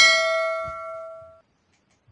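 A single bell-like metallic ding, struck once and ringing out, fading away over about a second and a half.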